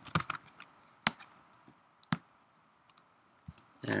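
Computer mouse clicks: a quick cluster at the start, then single sharp clicks about one and two seconds in, with a few fainter ticks later.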